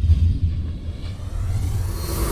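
Deep rumbling sound effect that starts abruptly and holds steady, with its weight at the very bottom of the range, backing an animated smoke logo reveal.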